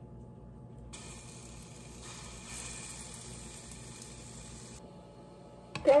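Pancake batter sizzling in a hot buttered nonstick frying pan: a soft, even hiss that starts about a second in and cuts off near five seconds.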